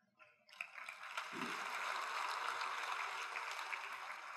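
Audience applause in a hall, a steady patter of many hands that starts about half a second in after a brief silence and keeps on evenly.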